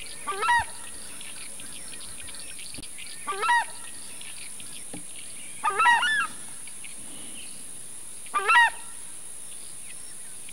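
Four loud honking calls from a large bird, one about every two and a half seconds, each a short call rising in pitch. Behind them are faint chirps and a steady high-pitched hiss.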